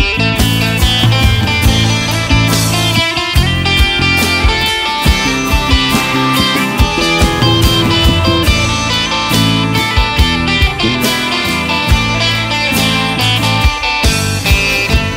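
Folk-punk band playing an instrumental passage: plucked strings over a steady beat, with no singing.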